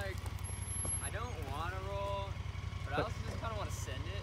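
2018 Honda Pioneer 1000 side-by-side's parallel-twin engine running at low revs as it creeps down a steep trail: a steady, even low pulse.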